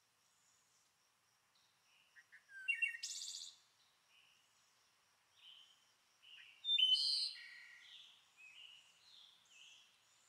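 Songbirds singing outdoors: scattered short high chirps and quick trills, loudest about three seconds in and again around seven seconds, with quieter calls between.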